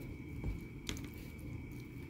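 Faint, soft squishing of a stone pestle (ulekan) pressing fried tempeh and wet sambal in a clay cobek, with a couple of light knocks.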